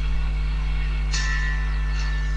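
Steady electrical mains hum, the loudest sound throughout, with music playing back in the room. Sustained high notes of the music come in about a second in.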